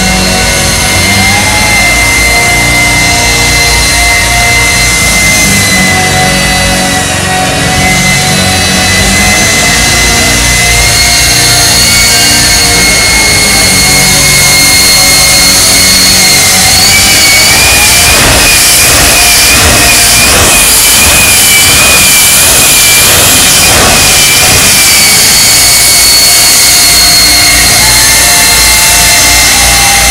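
Jet engine of Bob Motz's jet truck running loud and steady, with a high whine over a deep roar while it throws flame. In the middle stretch the whine wavers and a rapid pulsing comes through, then it settles back to a steady run.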